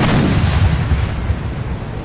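A ship blowing up at sea: a heavy explosion whose deep rumble rolls on and slowly fades.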